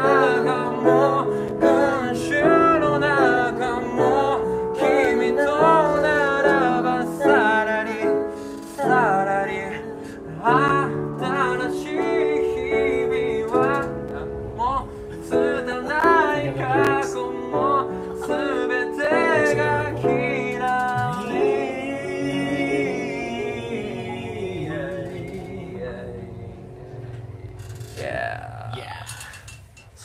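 A man singing a Japanese pop song to his own upright piano accompaniment, voice and piano together. The music thins and fades over the last several seconds, and a man's speaking voice comes in near the end.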